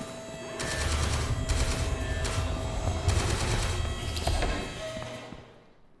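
Sustained rapid automatic gunfire, several weapons firing in a dense volley over a low rumble, which dies away near the end.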